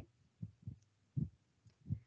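A few faint, muffled, low syllables spread across the two seconds: a child's voice answering over an online call.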